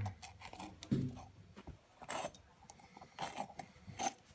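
Metal spoon scraping the seeds and pith out of a raw red bell pepper, then knocking and scraping them off onto a cutting board: a few short, faint scrapes and clicks about a second apart.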